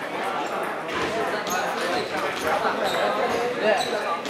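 Table tennis balls clicking irregularly off tables and bats across a table tennis hall, over a bed of chattering voices.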